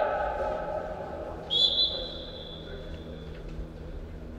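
A referee's whistle blown in one long blast of nearly two seconds, starting about a third of the way in. It is a single high steady tone that dips slightly after its sharp start.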